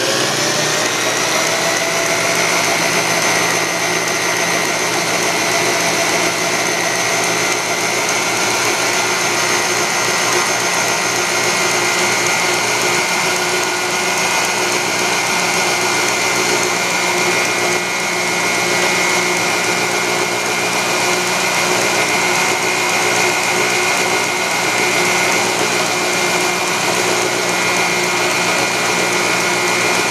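Variable-speed electric drill winding up to speed in the first second, then running steadily at high speed with a constant whine, driving a model Scotch-yoke air compressor (1-inch bore by 1-inch stroke) that pumps air into a balloon as it runs.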